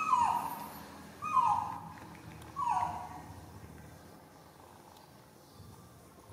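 A baby macaque crying three times, a little over a second apart: short calls that each start high and fall in pitch. The cries come as it reaches, open-mouthed, for a milk bottle, wanting to be fed.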